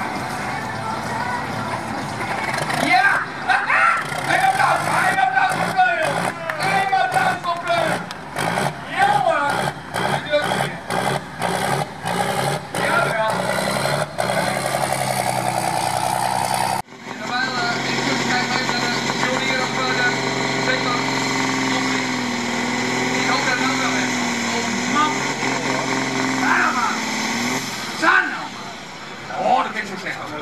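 Farm tractor's diesel engine at full power under load while pulling the weight sled, its pitch sagging and recovering in the second half. The sound changes abruptly about halfway through.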